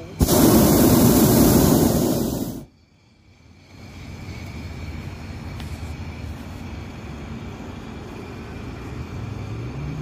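Hot air balloon's propane burner firing: one loud blast of about two and a half seconds, heating the air in the envelope, that cuts off suddenly. After it, a much quieter steady hiss.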